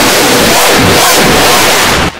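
Very loud, heavily distorted digital audio effect: a harsh hiss filling every pitch, with warbling rising-and-falling sweeps underneath. It cuts off suddenly at the end.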